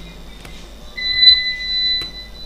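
An electronic beep: one steady high-pitched tone, starting about a second in and still holding at the end.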